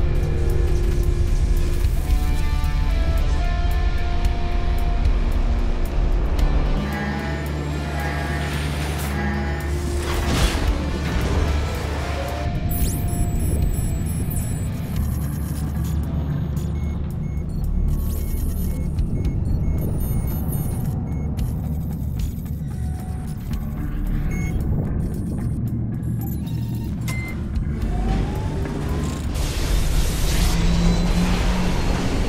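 Film soundtrack: sustained music over a deep, steady rumble of a spaceship's engines. Short electronic bleeps, like computer monitors, come through the middle stretch.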